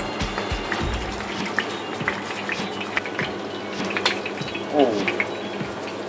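Ostrich steak sizzling in oil in a frying pan, a steady hiss with scattered small crackles and spits. Music with a regular low beat plays under it for the first second or so, and a voice sounds briefly near the end.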